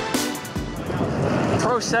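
Electronic music cutting off at the start, leaving a steady rush of wind and rolling noise from riding a BMX bike along a dirt track. A voice calls out a couple of times near the end.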